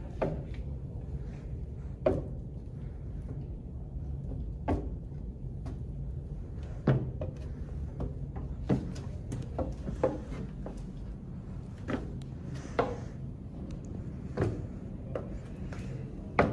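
Footsteps on a wooden practice staircase: about a dozen irregularly spaced knocks as a person steps up and down it one foot per step.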